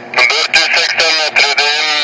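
A person's voice talking close to the microphone.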